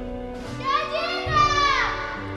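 A high voice calls out over held orchestral chords, its pitch rising and then sliding down in a long falling cry.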